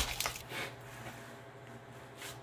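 A sharp click and a few brief crackles of plastic shrink-wrap being cut with a small knife, in the first half second, then quiet room tone.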